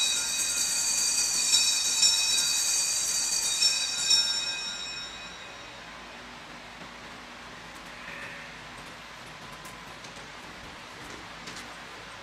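Altar bells ringing, several high bell tones shaken a few times, marking the elevation of the chalice after the consecration. The ringing dies away about five seconds in, leaving faint room tone.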